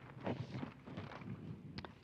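Faint rustling and small handling sounds of paper and objects on a tabletop, with a single light click near the end.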